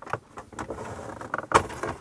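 Plastic upper dashboard trim tray of a VW T5 being pulled up by hand against its clips: a few scattered clicks and creaks, the loudest about one and a half seconds in.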